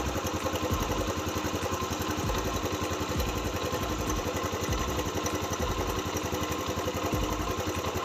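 Single-cylinder air-cooled motorcycle engine idling steadily with an even, fast pulse. It is running normally with a transparent spark plug cap fitted.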